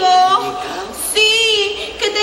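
A woman's high-pitched, drawn-out sing-song voice, in two phrases with a short break and a hiss about a second in.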